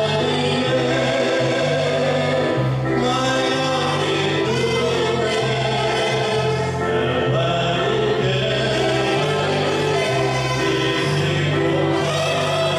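Gospel song sung by several vocalists over keyboard accompaniment, with a bass line that changes note about once a second.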